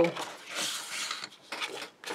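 Paper and card sliding over a cutting mat as sheets are moved, a rustle lasting about a second, then a few light clicks and taps near the end.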